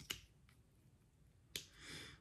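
Near silence broken by a sharp click at the start and a fainter one half a second later, as small plastic lipstick tubes are handled, then a short soft hiss near the end.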